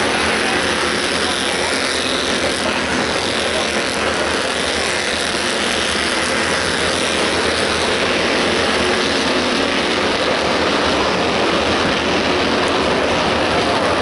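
Short-track stock car engines running loud and steady as the cars lap the oval.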